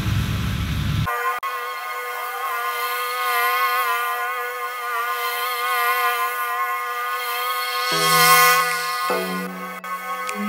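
Background electronic music: sustained synth chords with the bass cut away from about a second in, the bass line coming back near the end.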